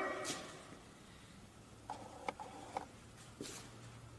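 Low room tone after a man's voice fades out at the start, with a few faint, brief voice fragments and a soft click about two seconds in, and a faint low hum near the end.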